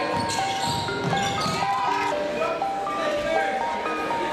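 Background music: a synth melody of short stepped notes, several a second, over a beat.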